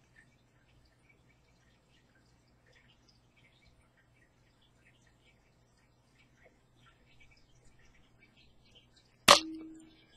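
Faint small ticks of thread and tool handling at a fly-tying vise, then near the end one sharp metallic click with a brief ringing tone: a metal tying tool knocking.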